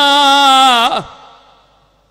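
A man's amplified chanted recitation: one long held note with a wavering vibrato that ends about a second in, its reverberation fading away afterwards.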